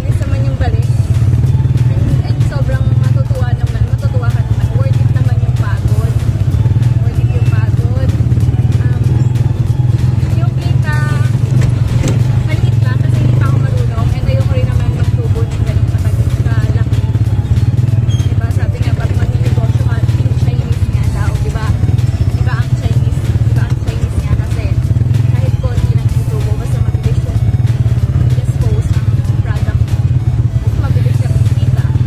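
Vehicle engine running with a steady low drone, heard from inside the vehicle's cab, with a woman talking over it.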